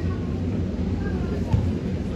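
Outdoor football-ground ambience: faint distant voices over a steady low rumble.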